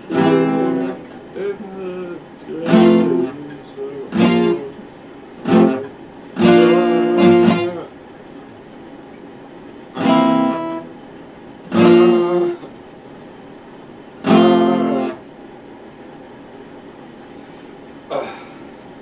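Epiphone acoustic guitar strummed in separate chords with short pauses between them, each chord ringing briefly, about eight in all; the playing stops a few seconds before the end.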